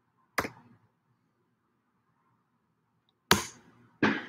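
Two isolated sharp clicks or knocks about three seconds apart, the second louder and briefly trailing off, with a faint low hum between them.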